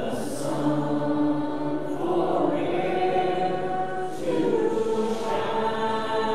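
A hymn sung by a group of voices in long held notes, the chord changing about every two seconds.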